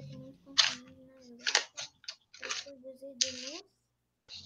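Quiet, low murmured speech: a voice held on a flat pitch, with a few short hissing consonants.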